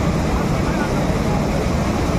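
Floodwater rushing steadily over a dam spillway, a dense, even roar of falling water that does not let up.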